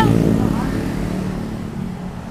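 Road traffic with a motorcycle passing close, its engine sound fading over the first second into a steady low rumble.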